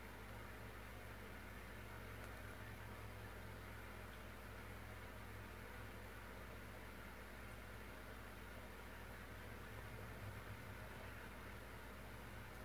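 Faint steady low hum with a soft hiss: room tone.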